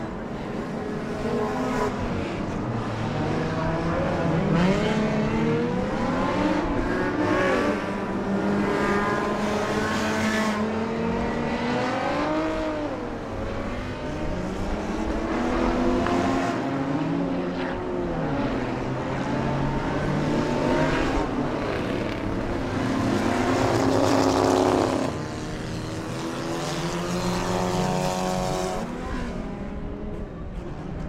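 Engines of several enduro stock cars running laps together. Their overlapping notes rise and fall as cars accelerate, lift and pass, and the loudest moment comes a few seconds before the end.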